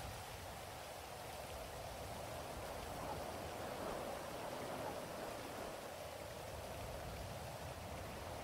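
Faint, steady rain ambience that swells slightly a few seconds in.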